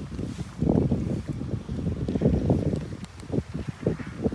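Wind buffeting a phone's microphone: an uneven, gusting low rumble that rises and falls.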